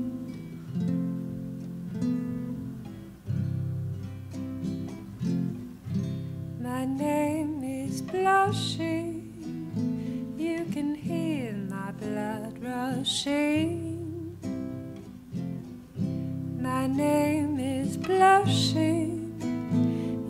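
Instrumental opening of a psychedelic folk song: acoustic guitar strumming chords. About six and a half seconds in, a higher melody line joins, sliding and bending in pitch.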